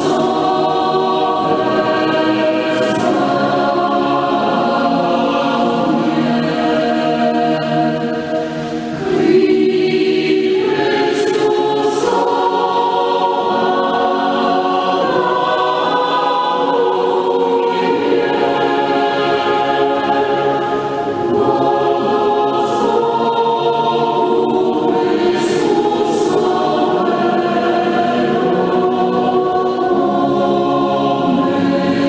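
A choir singing a slow devotional hymn in long, held chords. The singing dips briefly about eight seconds in.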